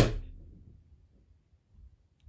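A single sharp knock, dying away over about half a second, followed by faint low rustling.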